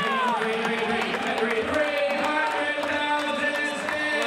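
Auctioneer's rapid sing-song bid chant calling the rising bids, over the murmur of a crowd in a large hall.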